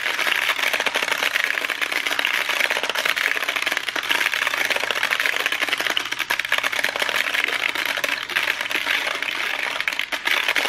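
Hypnogizmo bead toy turned by hand: many small beads run down its criss-crossing strings and drop, making a dense, continuous clicking rattle.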